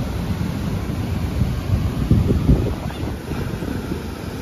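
Surf breaking on a sandy beach, with wind buffeting the microphone in a low rumble that gusts louder a little past halfway.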